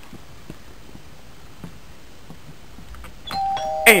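Two steady electronic tones, a higher one starting about three seconds in and a slightly lower one joining it a moment later, both held on like a doorbell chime. Before them there are only faint background and a few light clicks.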